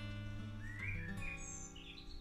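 Soft background music of plucked, guitar-like chords: one is struck at the start and rings on. Small birds chirp repeatedly from about half a second in.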